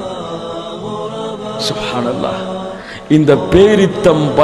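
A man's voice chanting in a drawn-out melodic tone through a microphone, holding long notes. About three seconds in it turns suddenly louder and more animated.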